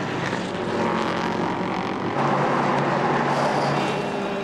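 LMP3 prototype race cars' V8 engines running at speed as two cars circulate close together. About halfway through, the sound changes abruptly to a louder, rougher engine noise.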